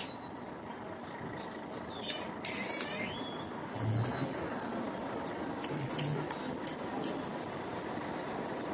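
Urban street ambience: a steady wash of traffic noise, with a few brief high, sliding squeaks about two seconds in.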